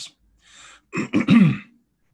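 A man clearing his throat once, about a second in, after a short, softer breath.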